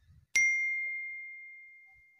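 A single bell-like ding: one sharp strike with a clear, high ring that fades away slowly over about a second and a half.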